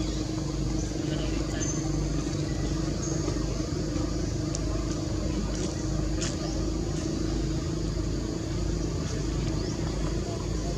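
Steady low engine-like hum and rumble with a constant drone, with a few faint high chirps.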